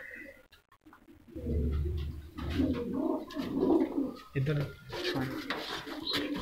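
Domestic pigeons cooing in a loft. The low cooing starts about a second and a half in and goes on for several seconds.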